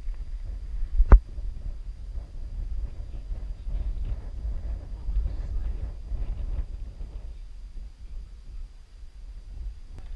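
Wind rumbling on an action camera's microphone during a climb up steel cables on bare granite, with one sharp click about a second in and faint rustling through the middle.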